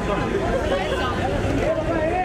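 Many people talking at once at close range: overlapping crowd chatter with no single voice clear, over a low background rumble.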